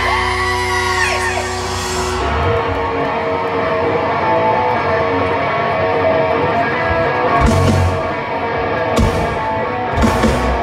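Hard rock band playing live over a festival PA, heard from the crowd: held notes and guitar bends for the first couple of seconds, then the full band with electric guitars and drums from about two seconds in.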